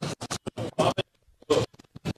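Background music with DJ-style scratching: a song chopped into short stuttering fragments, with a brief dropout a little after a second in.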